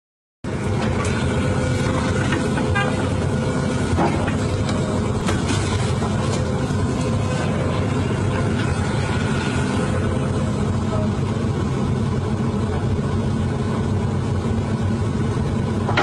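Hydraulic excavator's diesel engine running steadily, with a few sharp knocks and cracks from the bucket working the rubble of a demolished house.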